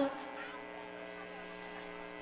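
Faint, steady electrical hum from a live sound system, left once a sung note breaks off right at the start.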